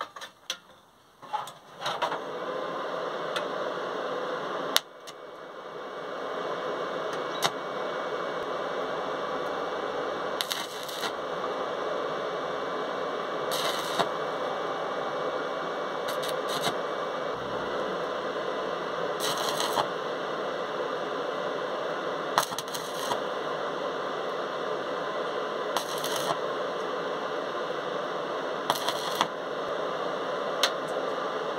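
Small inverter stick welder striking short arcs to tack-weld steel handle supports onto a steel plate: about six brief crackling bursts, each about half a second and a few seconds apart, over a steady hiss. A few knocks at the vise come first, about a second in.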